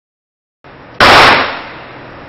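A single handgun shot at an indoor shooting range, about a second in: one loud, sudden crack with a short echo that dies away over about half a second. A steady background hum runs underneath.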